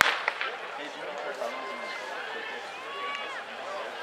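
A starting pistol fires one sharp shot that opens the race, and a short echo follows. Spectators then talk and call out over crowd noise.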